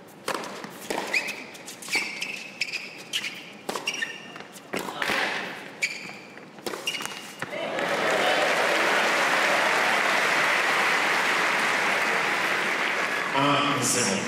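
Tennis rally on an indoor hard court: sharp racket strikes and bounces of the ball among short squeaks of sneakers on the court. About eight seconds in, a crowd breaks into steady applause, the loudest sound, which lasts several seconds; a man's voice starts near the end.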